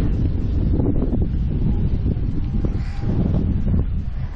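Wind buffeting the microphone: a loud low rumble that swells and dips in gusts.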